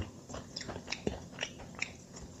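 A person chewing a bite of a dense, compressed emergency ration bar: a string of short, faint, irregular crunching clicks, several a second.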